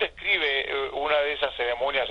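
Speech only: a person talking throughout, the voice thin and telephone-like, as if coming over a phone or internet link.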